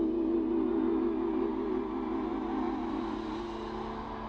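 Live stage music: a held chord with one note wavering slowly up and down over a steady low note, easing slightly in level toward the end.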